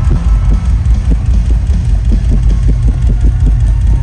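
Live rock drum solo on a large drum kit: a fast run of bass-drum and tom hits, about five a second, over a heavy, booming low rumble, loud enough to overload a crowd recording.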